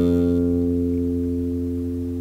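Electric bass guitar: a single note fretted low on the D string, plucked once and left ringing with a steady pitch, slowly fading.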